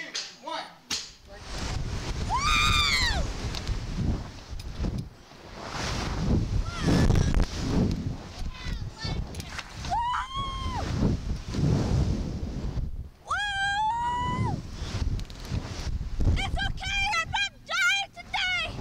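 Wind rushing and buffeting over the microphone as a Slingshot ride launches its riders upward, starting suddenly about a second in. Riders scream several times over it: high cries that rise and fall in pitch, a few spread out, then several in quick succession near the end.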